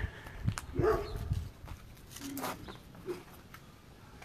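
A dog barking a few times, with short clicks and knocks in between.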